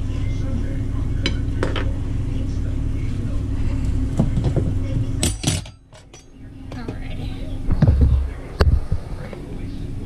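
Kitchen clatter of a fork and skillet clinking on a glass-top stove over a steady low hum. About halfway through the sound briefly drops away, then near the end come two heavy thumps as the camera is picked up and moved.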